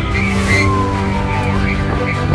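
Fire engine cab with the engine running and a siren winding down in one long falling whine that dies away about one and a half seconds in, under background music.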